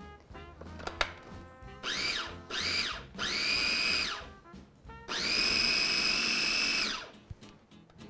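Cuisinart 3-Cup Mini-Prep Plus food processor pulsing pesto of basil, parsley, mint, garlic, Parmesan and pine nuts as olive oil is worked in: three short bursts, each with a rising then falling whine, then one steady run of about two seconds.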